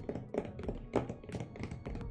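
A run of light, irregular taps and clicks, about eight or ten in two seconds, like hands working on a desk near the microphone.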